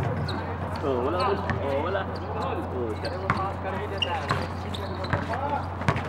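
Basketball game in progress: players' and onlookers' voices calling out across the court, with a few sharp, irregular thuds of the ball bouncing on the concrete, over a steady low hum.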